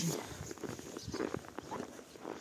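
Footsteps in deep fresh snow: a run of soft, irregular crunches.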